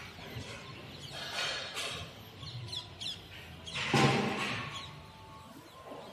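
Small birds chirping now and then in the open air. A short loud burst of rushing noise comes about four seconds in.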